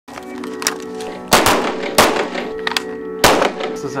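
Three handgun shots on an indoor shooting range: the first about a second and a half in, the next half a second later, the last about three seconds in. Background music with held notes plays under them.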